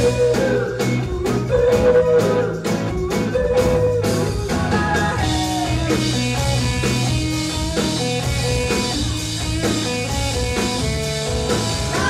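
Rock band playing live on electric guitar, bass guitar and drum kit. Hard, evenly spaced drum hits mark the first few seconds, then sustained guitar lines fill out the sound.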